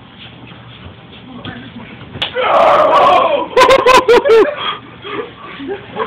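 A sharp smack about two seconds in, followed by a loud high-pitched voice shrieking and then giving about five quick yelps that rise and fall in pitch.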